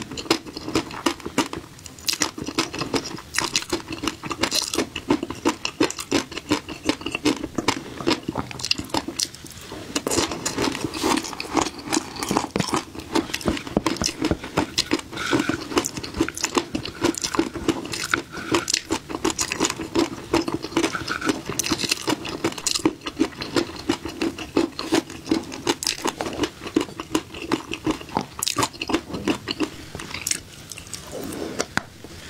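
Close-up chewing of a mouthful of flying fish roe (tobiko) with a spicy topping: a dense, continuous run of crisp crunches and small pops as the eggs burst between the teeth.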